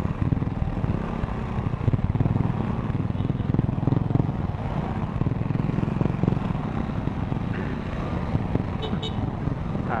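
Motorcycle and scooter engines running at low speed in stop-and-go traffic: a steady low rumble with a fast, even pulsing and no revving.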